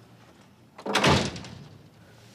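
A door slams shut about a second in: a single heavy bang that dies away over about half a second.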